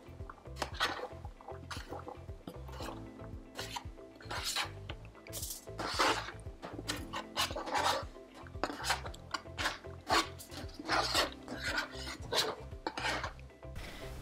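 A plastic spoon scraping diced courgette off a plastic cutting board into a stainless steel pot: many irregular scrapes with light knocks as the pieces drop in.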